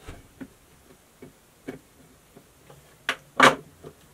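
Small clicks and taps from a dress form's pole being screwed into its tripod stand, with two sharper knocks a little after three seconds in.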